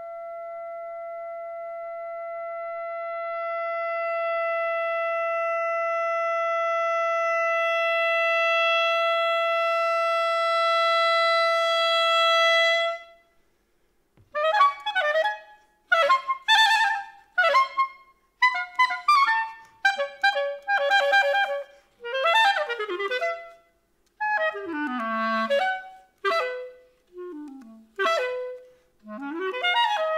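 Solo clarinet holding one long note that grows steadily louder for about thirteen seconds and then breaks off. After a short silence come quick flurries of fast runs and short phrases, with brief gaps between them.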